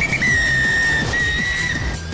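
A traffic officer's whistle blown in one long, steady blast of nearly two seconds, with a brief dip about halfway through, over background music.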